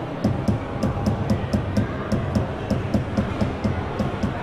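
Walk-in installation built like a Roland TR-808 drum machine, its sequencer striking real acoustic percussion in a looping beat. A hi-hat-like tick sounds about four times a second over repeating low drum hits.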